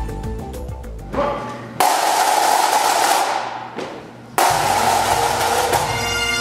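A short logo jingle fades out, then a pipe band cuts in abruptly about two seconds in: snare and bass drums with bagpipes. It cuts in again, louder, about four and a half seconds in, with the pipes' steady drone.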